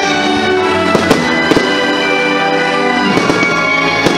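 Aerial fireworks bursting over orchestral show music: two sharp bangs about a second in, another pair half a second later, and a quick run of smaller bangs near the end.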